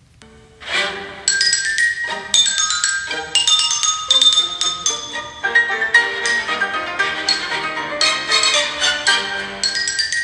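Recorded music starting about half a second in, with a xylophone playing the main theme in quick, short, wooden-sounding notes.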